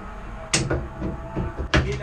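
Two sharp knocks about a second apart inside a race car's cabin, over a steady low hum.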